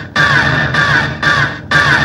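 Techno from a DJ set: a loud looping pattern of hard, noisy stabs about twice a second, each carrying a falling pitch sweep, over a pulsing low beat.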